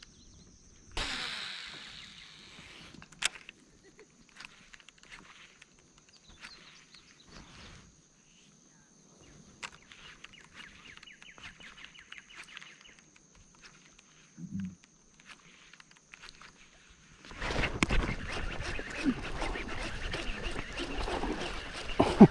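A cast about a second in, line running off a baitcasting reel and fading away, followed by faint clicks of the frog lure being worked. From about 17 s a hooked bass splashes at the surface beside the kayak while the reel is cranked, the loudest stretch.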